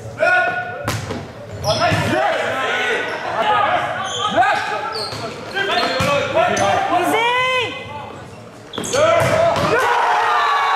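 Volleyball rally in an echoing gym: the ball smacked on the serve and hits, players shouting calls to each other. About nine seconds in, a loud burst of cheering and shouting as the point is won.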